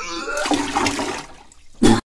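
A person vomiting, played as a sound effect: a retching voice with gushing, splashing liquid that dies away after about a second and a half, then a short loud burst near the end.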